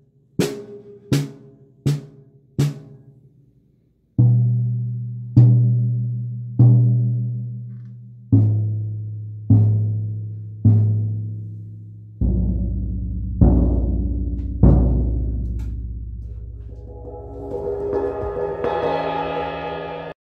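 Felt timpani mallets (Vic Firth T1) striking a drum kit: four quick strokes on a higher drum, then three ringing strokes each on toms that step lower in pitch down to the floor tom, with a soft, deep tone. Near the end a mallet roll on a Meinl cymbal swells up into rising waves of shimmer.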